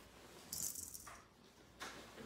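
A brief, high rattling rustle of paper lasting about half a second, then a short intake of breath near the end.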